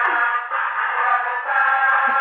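A tinny electronic melody playing through a megaphone's small horn speaker, held notes stepping from one pitch to the next.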